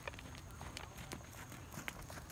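Horse hooves striking a sand arena footing: a few irregular thuds as the horses move around the ring.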